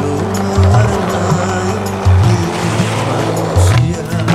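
Music with a bass line over the rolling noise of skateboard wheels on asphalt.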